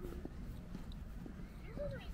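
Footsteps on a park path with a low rumble underneath and faint voices of passers-by, one rising and falling call near the end.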